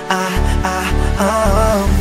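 Russian pop song in a short instrumental gap between sung lines: sustained synth and bass chords, with the drum beat dropping out, and a melody line wavering in pitch through the second second.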